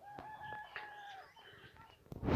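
A rooster crowing once, a faint drawn-out call lasting a little over a second, with small birds chirping.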